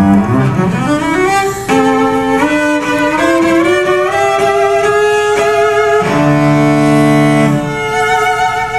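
Bowed cello playing a slow jazz melody that climbs step by step and settles on a long note with vibrato. A lower sustained note from the accompaniment comes in near the end.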